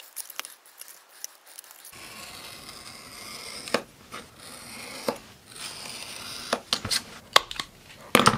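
Scissors snipping thin paperboard, then several sharp clicks over a steady hiss as metal tools and a ruler are handled on a cutting mat.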